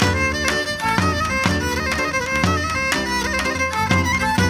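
Live Pontic Greek folk dance music: a Pontic lyra (kemenche) plays the bowed melody over a steady band accompaniment with a drum beat of about two strokes a second.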